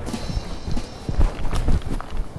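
A quick, irregular series of knocks and low thuds, several a second, loudest a little past the middle.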